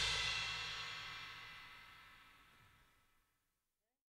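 The final chord of a rock song ringing out, with cymbals washing away over it, fading to silence about a second and a half in.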